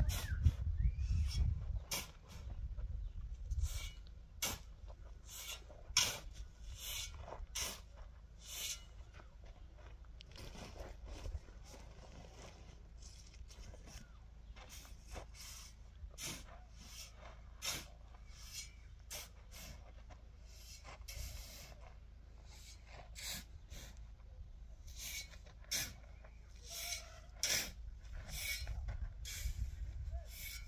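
Steel shovel scraping and digging into a pile of sand, one short stroke after another at irregular intervals, closer together at first and again near the end. A low rumble sounds under the first two seconds.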